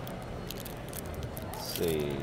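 Chromium trading cards being slid off one another as a freshly opened pack is flipped through, with soft sliding and ticking sounds over the steady murmur of a busy convention hall.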